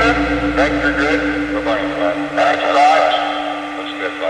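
Live synthesizer music at the end of a track: the low bass and pulsing beat fade out about halfway through, leaving a steady synth tone held on. Voices carry on over it.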